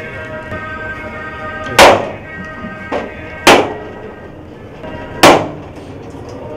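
Coconuts smashed against a stone in a steel plate: three loud, sharp cracks about a second and a half apart, each with a short ringing tail, over steady background music.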